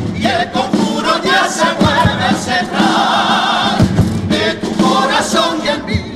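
A carnival comparsa, a male choir singing in harmony, accompanied by Spanish guitars and bass-drum strokes.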